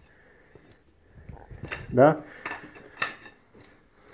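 Ceramic hexagonal floor tiles clinking and scraping against one another as they are slid and nudged into place by hand, with a few sharp clicks in the second half.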